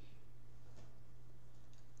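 Room tone: a steady low electrical hum with a couple of faint light clicks.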